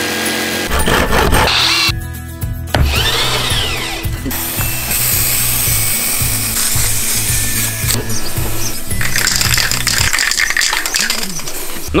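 Background music with a steady beat over short, abruptly cut snippets of workshop sound: an electric jigsaw cutting plywood, and later the hiss of a spray paint can.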